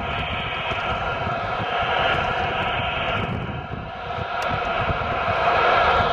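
Strong wind buffeting the microphone on a small rowing boat in choppy water: a loud, steady rush with a gusty low rumble, easing briefly about four seconds in.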